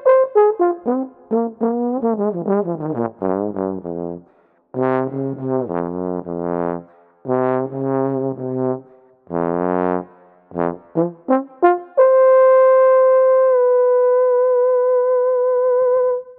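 Solo trombone playing: a run of short notes, a slide down into low notes held with vibrato, then one long high note sustained through the last four seconds as the piece ends.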